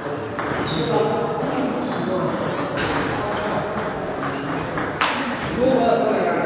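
Table tennis ball clicking off paddles and table during a rally, with more ball clicks from neighbouring tables, sounding in a large echoing hall over background voices.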